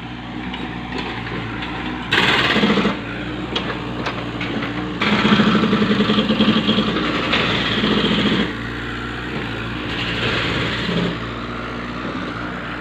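Mini excavator's diesel engine running steadily, growing louder briefly about two seconds in and again for about three seconds from the middle.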